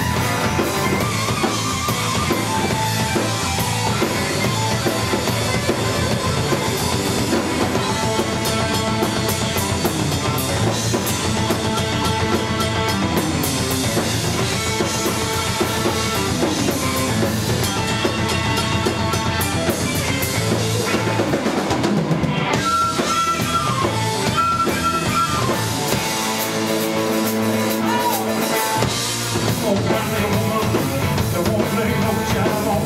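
Live rock band playing: electric guitars, bass guitar and a drum kit with a steady beat. Near the end the bass drum and low end drop out for a few seconds before the full band comes back in.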